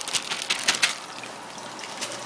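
Water splashing and trickling into an aquarium as fish are tipped in from a bag: a quick run of small splashes in the first second, then a steady, softer trickle.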